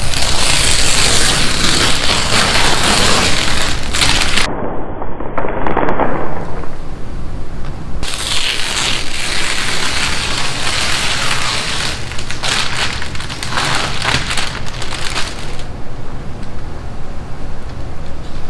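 Masking paper and plastic sheeting crinkling and tearing as they are peeled off freshly painted panels, with masking tape ripping free. The crackling is dense and loud, sounds duller for a few seconds about a quarter of the way in, and thins out near the end.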